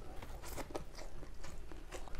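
A person biting and chewing a piece of chicken in spicy yellow curry (opor ayam) with rice, eaten by hand: a string of short, irregular mouth clicks.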